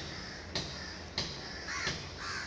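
Pen nib scratching short strokes on paper, three times. Near the end a bird gives a short call.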